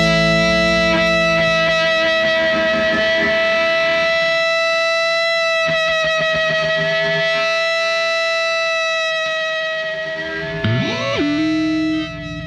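Distorted electric guitar chord held and left ringing at the close of a punk rock song, slowly thinning out, with a quick sliding bend up and back down near the end before the chord is cut off.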